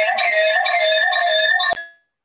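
Participants' voices coming through a video call, a drawn-out, sing-song "yes" held with a slightly wavering pitch, cut off suddenly near the end.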